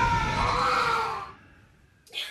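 A person's long scream, rising slowly in pitch over a low rumble, that cuts off about a second and a half in.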